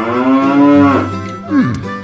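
Battery-operated toy cow playing a recorded moo: one long moo, then a short moo falling in pitch about a second and a half in, over the toy's music.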